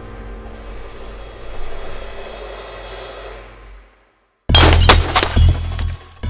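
Tense film-score music fading away, a moment of silence, then a sudden loud crash of shattering glass with several sharp impacts.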